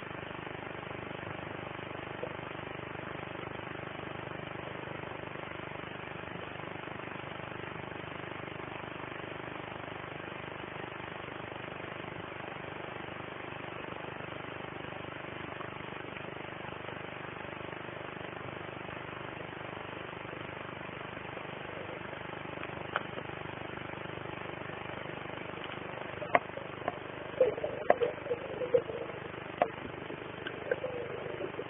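Steady, muffled underwater noise picked up by a camera in a waterproof housing. Near the end come several sharp clicks and a brief bubbly gurgle.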